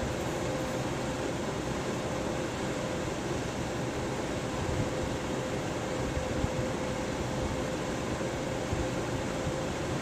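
Electric fan running steadily: a constant airy rush with a faint steady hum.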